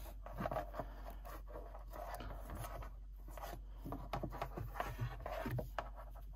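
Braided rope rubbing and sliding through hands and against itself as an Alpine butterfly loop knot is pulled tight and dressed: faint, uneven rubbing and scraping with a few small ticks.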